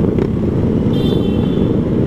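Motorcycle engines of a group ride at low speed, a steady low rumble without revving, with a faint high tone briefly about halfway through.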